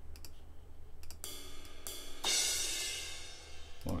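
A few mouse clicks, then two sampled cymbal hits from a software drum kit. The first comes about a second in and is cut short. The second, a crash cymbal, comes at about two seconds and rings out, fading away.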